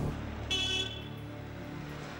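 Street traffic noise, with a short car horn toot about half a second in.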